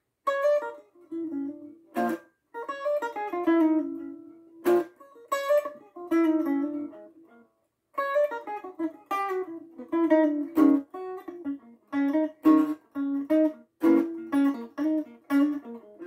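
Hollow-body archtop guitar playing a blues improvisation: short phrases of picked notes, with two brief pauses between phrases.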